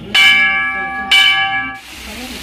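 Temple bell struck twice, about a second apart, each strike ringing on in several clear tones before the sound cuts off near the end.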